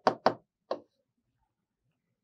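Three short, sharp taps of a pen striking the hard surface of a digital writing board as it writes, all within the first second.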